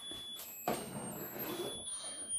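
Musical lotus-flower birthday candle playing its tune as thin, high electronic notes that change pitch every fraction of a second. From about a third of the way in, a soft rush of breath, as of blowing toward the candles, sounds with it.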